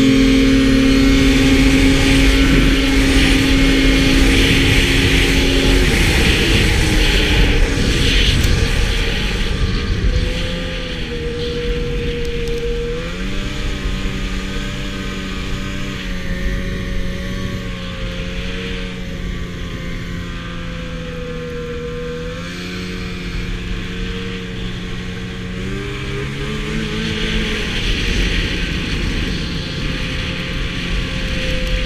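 Arctic Cat snowmobile engine running at high, steady revs, then easing off about six to ten seconds in and carrying on at lower, wavering revs as the sled cruises.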